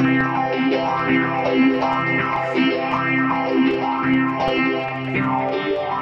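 Shoegaze music: a heavily effected, distorted electric guitar playing sustained, layered notes over a steady low drone.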